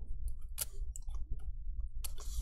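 Light clicks and taps of a plastic pry tool and fingers on a laptop's CPU fan and its cable connector, as the connector is pushed and pulled loose. The loudest click comes about half a second in.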